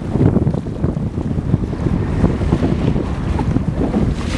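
Wind buffeting the microphone on a moving boat at sea, a loud, uneven low rumble that covers the sound of the water.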